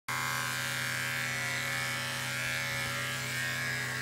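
Corded electric pet clippers running with a steady buzz, clipping a dog's fur around a hot spot on its chest.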